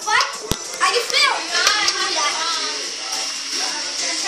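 Children's high-pitched voices shouting and calling over one another as they play, with a sharp click about half a second in.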